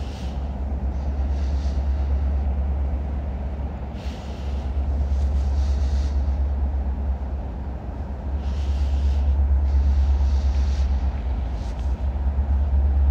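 Diesel locomotives running as a freight train approaches: a deep, steady rumble from the EMD SD60E engines that grows louder in the second half, with brief bursts of hiss coming and going.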